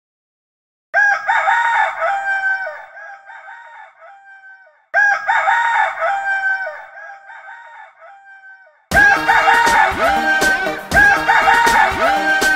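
A rooster crowing twice, each crow fading away in repeating echoes, the first about a second in and the second about five seconds in. Music with a quick beat starts about nine seconds in.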